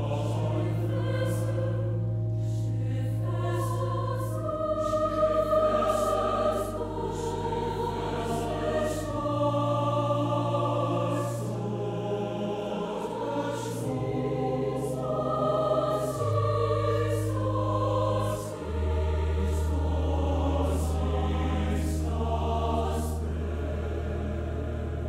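Large mixed high-school choir singing slow, sustained chords in several parts, under low held notes that step to a new pitch every few seconds.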